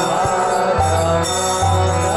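Kirtan music: a harmonium holding chords, with small hand cymbals jingling and a low drum stroke about every 0.8 seconds.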